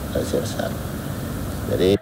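Steady low background hum of an office room in a pause between a man's sentences, with a few faint bits of speech about a quarter second in and just before the end.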